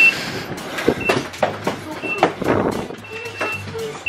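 Bicycles and loaded panniers clattering and knocking as they are pushed aboard a Swiss regional train, while a short high beep repeats about once a second, typical of the train's door-closing warning.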